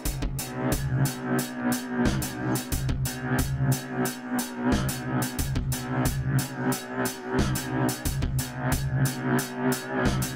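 Electronic drum-machine beat played through a tape-style multi-tap delay on its 'Broken Recorder' preset, the echo repeats filling in a dense, steady rhythm of clicky hi-hats over a pitched bass line.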